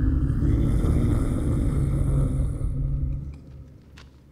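Deep rumbling sound effect for nuclear test explosions cracking the earth, loud and then fading out a little over three seconds in.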